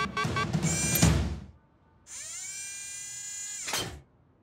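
Cartoon score with drums that cuts off suddenly about a second and a half in. After a brief pause, a cartoon sound effect sets in: a tone that rises and then holds steady for about a second and a half, ending in a short whoosh.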